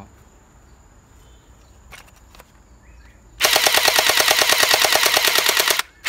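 Toy M416 gel-ball blaster firing a long rapid full-auto burst of evenly spaced sharp shots, starting a little past halfway and stopping just before the end.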